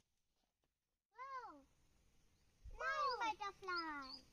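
A child's high-pitched voice: a single call that rises and falls about a second in, then a quick run of excited words or calls near the end.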